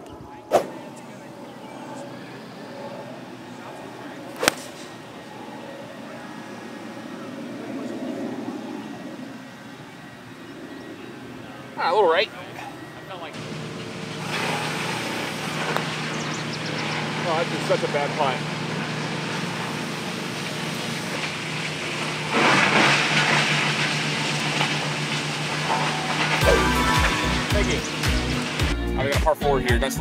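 A single sharp click of a golf club striking the ball off the tee, a few seconds in. About halfway through, background music comes in and carries on to the end.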